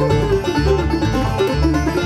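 Bluegrass band playing between sung lines: banjo picking over acoustic guitar with regular bass notes.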